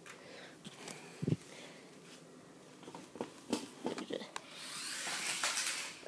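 Air Hogs Hyperactives remote-control stunt car running on a concrete floor: scattered knocks and clatter from its wheels and body, a dull thump about a second in, and the whirring hiss of its small electric motor building in the last second and a half.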